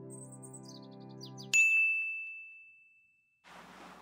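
Promo music: a held chord with a quick descending twinkle of high notes above it, cut off about one and a half seconds in by a single sharp bell ding. The ding rings on as one high tone and fades away.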